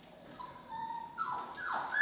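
Eight-week-old doodle puppies whimpering: a few short, high whines, each falling in pitch, getting louder toward the end.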